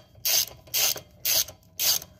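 Socket ratchet wrench clicking on a car wheel's lug nut, worked back and forth in four short rasping bursts, about two a second.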